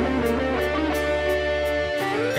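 Band music led by guitar, with a held bass note and a light cymbal tick about three times a second.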